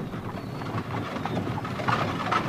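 A pony trap on the move: a pony's hooves clip-clopping over the rolling of the trap.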